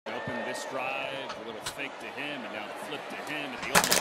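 Football TV broadcast audio playing back at a moderate level: a commentator's voice over steady stadium crowd noise, with a few sharp knocks near the end.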